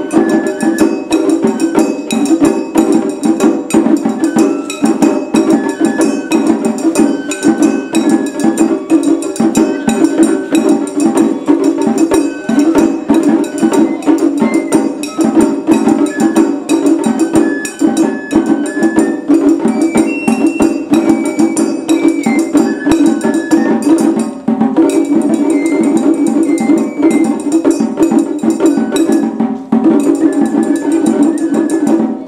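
Japanese festival hayashi music: a bamboo transverse flute (shinobue) plays a melody over rapid, steady strokes on small shime-daiko drums, with a large drum beneath. The playing drops out briefly about 24 seconds in and again just before the end.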